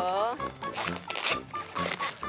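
Long latex modelling balloons squeaking and rubbing against each other as they are twisted into a shape, over light background music.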